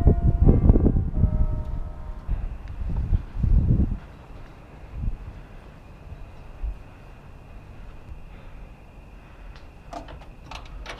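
Wind rumbling on the microphone for the first few seconds. About two seconds in, a thin steady high alarm tone starts and keeps sounding, with a few soft footfalls on metal stairs.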